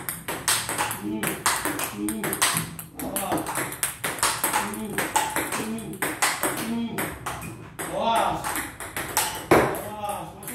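Table tennis ball clicking sharply off the paddle and table in a fast forehand rally, about two to three hits a second, with short "oh" exclamations between the hits.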